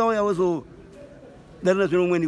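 Speech only: short spoken phrases in Shona with a pause between them.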